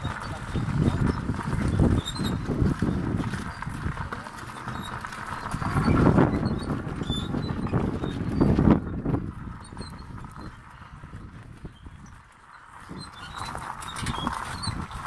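Donkey-drawn cart moving over a gravel track: hooves clopping and the cart rumbling and rattling, in uneven surges, quieter for a moment near the end.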